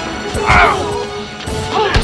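Action-film fight sound: punches landing and pained shouts over tense background music, with a hard hit near the end.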